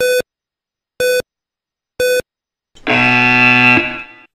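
Yo-Yo intermittent recovery test audio cue: three short electronic beeps, one second apart, count down the end of the recovery period. A longer, lower buzzer tone of about a second follows near the end, signalling the start of the next 20 m shuttle run.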